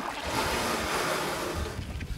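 Steady rushing of wind, with a low rumble of wind buffeting the microphone.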